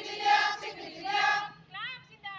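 A crowd of women chanting a protest slogan in unison, two long shouted syllables followed by a falling call near the end.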